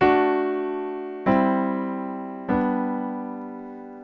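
Piano right hand playing three block chords, each struck once and left to ring and fade. The D chord (A, D, F♯) comes first, C (G, C, E) about a second in, and G (G, B, D) about two and a half seconds in, held longest.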